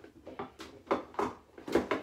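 Bottles and jars knocking and clinking in a refrigerator door shelf as a bottle is put away: a string of short, uneven knocks, the loudest near the end.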